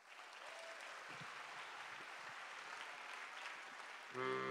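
Faint audience applause, an even patter of clapping.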